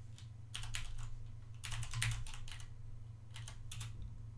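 Computer keyboard typing, a few short runs of keystrokes with brief pauses between them.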